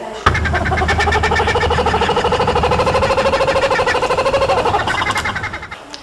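Laughing kookaburra calling: a rapid, rolling chatter of pulsed notes lasting about five seconds, dropping in pitch and fading near the end.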